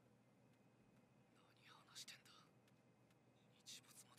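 Near silence: room tone, with a faint whisper twice, about a second and a half in and again near the end.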